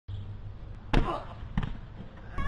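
Two hollow thumps of a large rubber ball being struck and bouncing, the first and loudest about a second in, the second weaker about half a second later.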